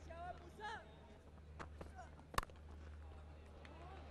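Faint cricket-ground broadcast ambience: a steady low hum under faint distant voices, with one sharp crack about two and a half seconds in.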